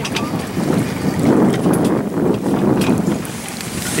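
Wind buffeting the microphone on a sailboat under way, over the wash of water along the hull. It swells for a second or two in the middle.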